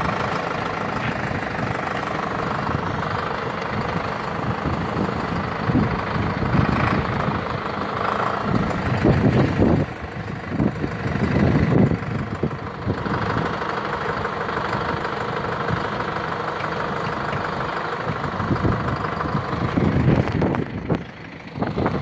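Diesel engines of a farm tractor and a van running as the tractor tows the stuck van on an ice road with a tow strap, with a few louder surges from the engines working harder.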